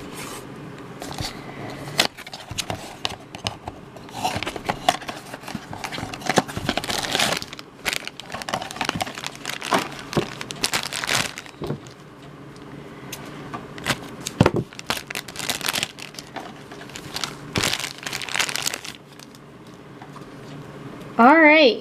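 A black foil blind bag being handled, crinkled and torn open, with dense, irregular crackling and rustling throughout.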